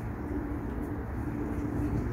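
Steady low background hum and rumble, with a faint steady tone above it.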